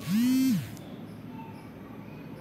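A man's voice draws out the end of a word for about half a second, the pitch rising, holding and then dropping. After that there is only quiet room noise.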